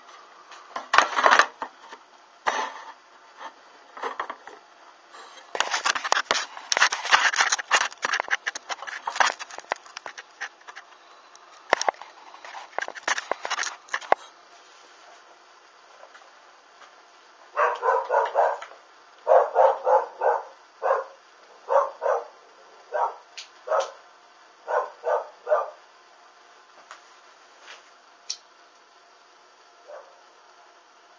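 Rustling and rubbing noises for the first dozen or so seconds, then, after a short lull, a run of about fifteen short, sharp calls in quick succession, a couple a second.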